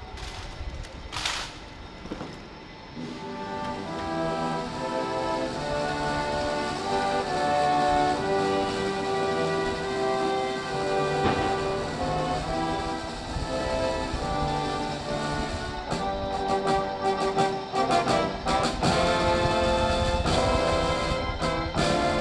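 A military brass band plays a slow, stately salute, starting about three seconds in with held chords. It comes just after a shouted parade command.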